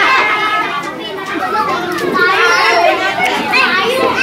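A crowd of young children talking and calling out over one another, with high-pitched excited shouts in the second half.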